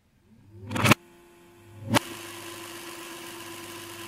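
A mechanical whir rises quickly and cuts off abruptly within the first second. A sharp clunk follows about two seconds in, then a steady hum with hiss.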